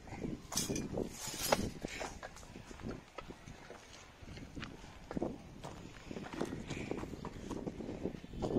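Footsteps on dry earth: irregular scuffs and knocks, the loudest about a second and a half in.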